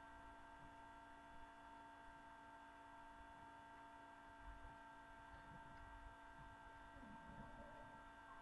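Near silence: a faint, steady electrical hum made of several even tones, under room tone.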